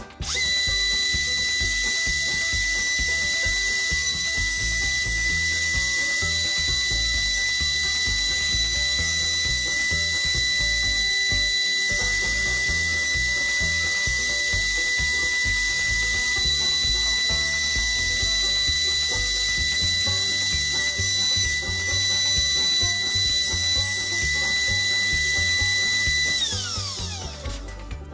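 CNC router spindle milling plywood with an end mill: a steady high-pitched whine over a cutting hiss, starting abruptly. Near the end the spindle stops and its whine falls in pitch as it spins down.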